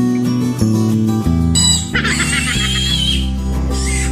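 Background guitar music, with a piglet squealing loudly and high-pitched for about a second and a half from about two seconds in as it is handled, and starting to squeal again near the end.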